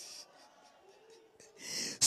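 A pause in speech with low room tone, broken by two short breathy hisses at a handheld microphone: one right at the start and one just before speech resumes near the end, like a breath drawn in before speaking.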